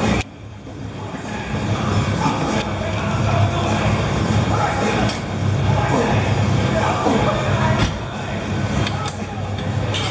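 Busy gym ambience: background music and indistinct voices over a steady low hum, with a few short sharp clicks spread through it as a leg extension machine is worked.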